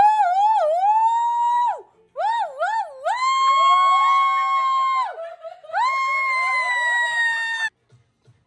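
Excited high-pitched screaming from fans: three long squeals, each wavering up and down at first and then held on one pitch, with a second voice joining briefly in the middle one.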